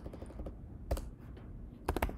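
A few keystrokes on a computer keyboard, backspacing over a mistyped entry. The two sharpest clicks come about a second apart.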